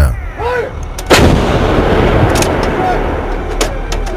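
Artillery fire: one loud blast about a second in, its noise trailing off slowly, with a few fainter cracks after it.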